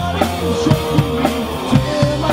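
Live rock trio playing an instrumental passage with no singing: electric guitar, bass guitar and a drum kit keeping a driving beat.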